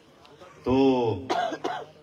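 A man's short vocal sound, then two quick coughs just past the middle.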